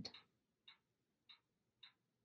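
Faint, regular ticking, three ticks a little over half a second apart, like a clock ticking in a quiet room.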